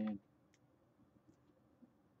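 A man's voice finishing a phrase right at the start, then a quiet room with three faint, short clicks spaced about half a second to a second apart.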